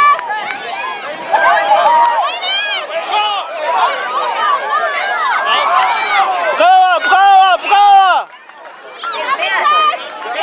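Many voices shouting and calling over one another from the sideline and the field. About seven seconds in, one loud voice shouts three times in quick succession.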